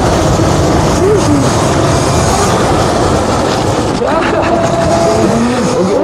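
Loud, steady wind rushing and buffeting over an action-camera microphone while riding an e-bike. A voice is faintly heard under it from about four seconds in.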